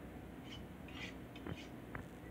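A newborn baby's faint, brief cries, a few short high-pitched whimpers, with a couple of soft clicks near the end.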